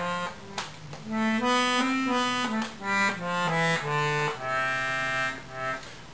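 Giulietti free-bass accordion played on its left-hand chromatic bass buttons alone: a run of bass notes and chords, each held about half a second, with a longer one held from about one second to two and a half seconds in.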